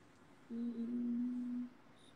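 A woman's closed-mouth hum, one steady note held for about a second, as if thinking.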